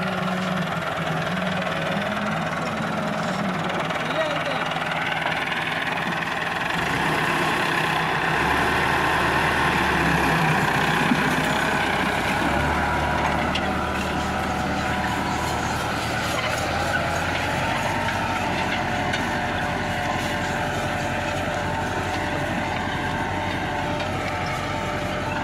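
Massey Ferguson 375 tractor's four-cylinder diesel engine running steadily while pulling a 16-disc offset disc harrow through tilled soil. About seven seconds in the engine note deepens and grows a little louder as it takes up the load.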